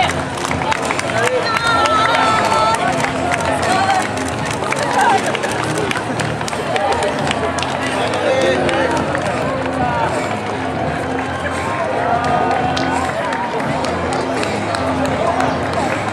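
Several voices calling out and cheering, not clearly worded, over faint background music.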